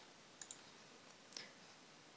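Near silence with a few faint computer mouse clicks: two close together about half a second in, and one more a little after the middle.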